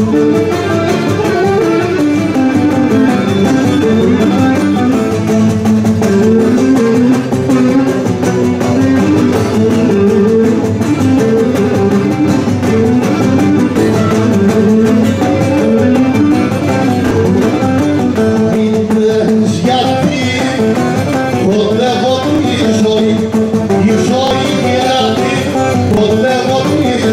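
Live Cretan folk dance music played loudly, with plucked string instruments carrying a continuous, winding melody.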